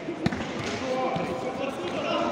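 A single sharp thud about a quarter second in: a blow landing between two sparring fighters, with voices from the hall around it.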